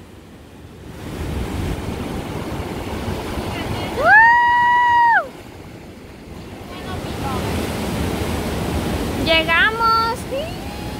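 Ocean surf breaking and washing up a sand beach, a steady rush that swells in the first second or two. About four seconds in, a person's high, drawn-out cry lasts about a second and is the loudest sound; a voice is heard briefly near the end.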